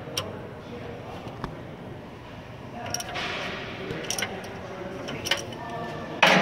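Ratchet wrench clicking in scattered single and paired clicks as it turns the adjusting bolt of an Eaton Fuller Easy Pedal heavy-truck clutch, held released by the pressed pedal, to take up the clutch adjustment.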